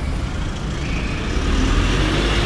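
City street traffic: a motor vehicle passing on the road, growing louder toward the end.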